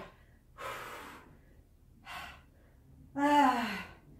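A woman breathing hard with effort during a squat-and-curl set: a long noisy breath about half a second in, a short one around two seconds, then a voiced groan falling in pitch near the end.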